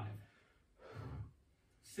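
One heavy exhale, a sigh-like breath about a second in, from a person straining through a seated dumbbell exercise.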